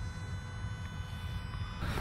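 Toyota Urban Cruiser's diesel engine idling: a low steady rumble with faint steady high-pitched tones over it. Near the end the sound turns louder and hissier.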